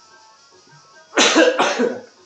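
A man coughing twice in quick succession, loud, just over a second in.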